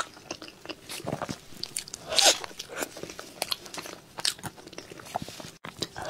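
Close-miked eating sounds: a person chewing and biting into a chocolate-glazed cake, with irregular wet mouth clicks and crunches and a louder crunch about two seconds in.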